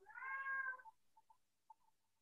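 A cat meowing once, a single call under a second long.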